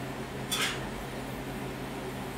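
Steady hum of a kitchen range-hood fan running, with one brief scrape about half a second in as a tray goes into the open oven.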